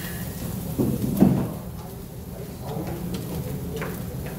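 A dull thump about a second in, then a few light clicks near the end, over a steady low hum.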